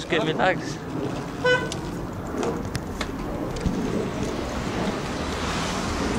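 A short, high horn toot about a second and a half in, followed by steady road and traffic noise with scattered clicks.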